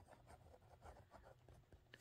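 Faint scratching of a pen writing on lined notebook paper, in short irregular strokes as words are written out by hand.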